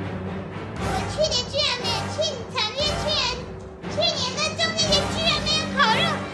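A woman's high-pitched, animated voice exclaiming in Chinese over steady background music.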